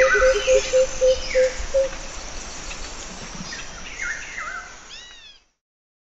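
Jungle bird calls: a quick run of low repeated notes on two alternating pitches for about the first two seconds, then several higher calls that slide downward. The sound fades and stops about five and a half seconds in.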